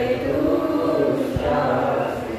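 A man chanting a devotional prayer in a melodic voice, holding long sung notes.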